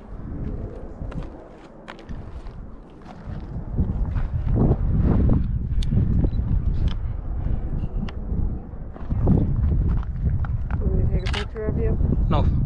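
Footsteps crunching on a rough lava-rock trail, with wind rumbling on the microphone that grows much louder about four seconds in.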